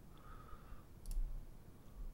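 A few faint, short computer mouse clicks over quiet room tone, the clearest about a second in.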